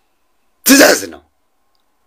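A man clearing his throat once, a short burst a little over half a second in.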